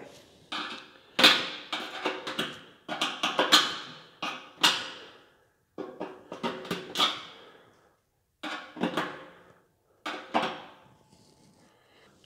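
A kitchen knife scraping and knocking against freshly drilled holes in a stainless steel grill bowl, clearing the metal burrs. The strokes come in a run of about a dozen short scrapes, each with a brief metallic ring from the bowl.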